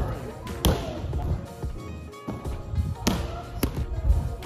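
Three sharp thuds of a gymnast's feet striking a tumbling strip, one about half a second in and two close together around three seconds in, over background music and voices.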